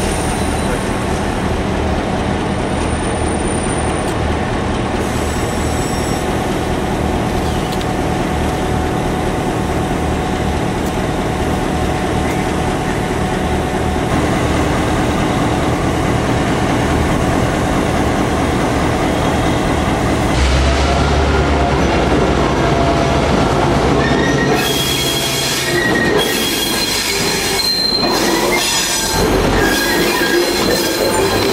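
Irish Rail 121 class diesel locomotive's engine running steadily, then opening up with a deeper, stronger note about two-thirds of the way through as it pulls its train away. Near the end the wheels squeal and clatter as the locomotive and coaches roll past.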